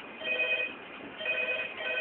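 Telephone ringing with an electronic ring: short bursts of steady tones about half a second long, starting a moment in and coming three times, the last running on past the end.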